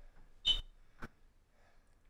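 A mostly quiet room with one very short, high chirp about half a second in and a faint click about a second in.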